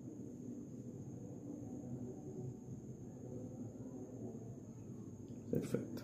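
Quiet room tone: a steady low hum with a faint thin high whine, broken by a couple of short clicks near the end.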